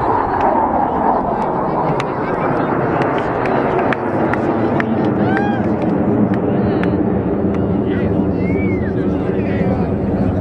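Jet engines of the five Blue Angels F/A-18 Hornets passing overhead in formation: a loud, steady roar whose pitch falls in the first second, then holds on a steady drone.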